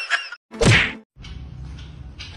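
A single loud whack with a falling swoosh about half a second in, a comedy sound effect, followed by faint steady outdoor background noise.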